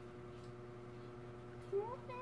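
A domestic cat gives one short rising meow near the end.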